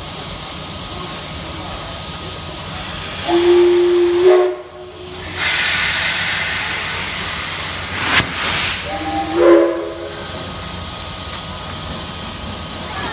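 JNR Class D51 steam locomotive standing at a platform, its steam hissing steadily. A steam whistle gives two short blasts, one a little after three seconds in and one about nine seconds in, and a louder rush of escaping steam follows the first blast. A sharp click comes about eight seconds in.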